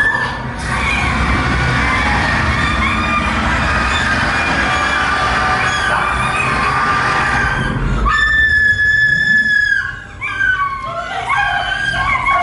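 Music, then a loud, high scream held steady for nearly two seconds about eight seconds in, followed by shorter broken voice-like cries.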